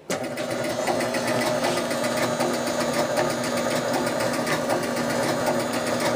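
1976 Gottlieb Card Whiz electromechanical pinball machine switched on, buzzing steadily from the moment it powers up, with faint regular ticking in the background. The buzz comes from a relay, which the owner thinks is the first ball relay; straightening the start relay's contacts has not cured it.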